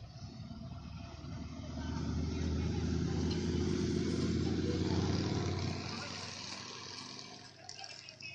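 Highway traffic passing by: engine rumble and tyre noise build from about a second in, are loudest in the middle, then fade away.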